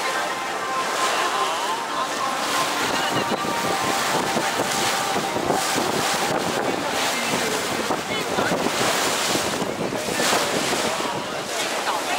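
Tour boat under way: water rushing along the hull and wind buffeting the microphone in irregular gusts.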